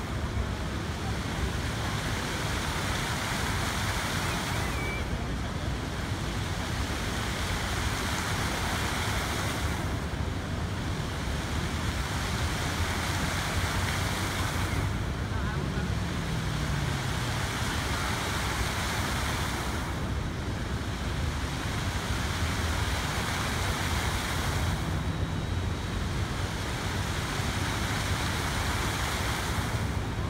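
Rows of fountain jets spraying and splashing back onto the lake: a steady rush of falling water. Its hiss eases briefly about every five seconds as the jets rise and fall.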